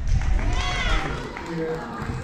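Low thuds of running footsteps on padded gym mats during the first second, while a voice calls out in a loud, high shout that rises and falls; after that, people talking.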